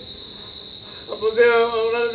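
Crickets trilling in one steady high tone. From about a second in, a voice holds one long drawn-out note over it.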